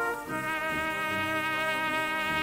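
Solo cornet holding long notes over brass band accompaniment, moving to a new note just after the start.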